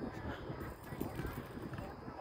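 Background chatter of people talking at a distance, over an irregular low rumble and thumping on the microphone.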